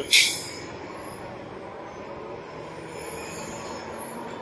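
A short, sharp hiss just after the start, then the steady wind and tyre noise of a fat-tire electric bike being ridden, with a faint high-pitched whine that rises and falls.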